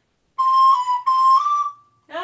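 A recorder playing a short phrase of four notes in two pairs, the last note a step higher. The notes are tongued with the historic 'ta-ra ta-ra' articulation, which gives the shape of slur two, slur two without actually slurring.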